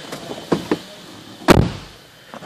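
A car door being shut from inside the cabin: one loud thump about one and a half seconds in, after two faint clicks.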